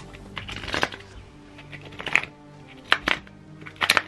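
Glossy new oracle cards being handled and loosened up: a handful of short, sharp card snaps and rustles, the loudest in the second half, over soft background music.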